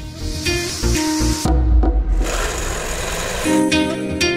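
Background music with plucked strings over the whir of an electric drill boring holes in copper pieces.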